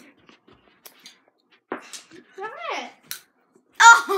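A girl's brief vocal sounds: a short sung or hummed exclamation that rises and falls in pitch about halfway through, and a loud exclamation starting just before the end, with a few faint clicks in between.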